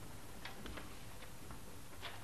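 Quiet concert-hall hush with a few faint, scattered clicks and light taps: stage handling noise as the conductor's score is settled on a music stand before the orchestra starts.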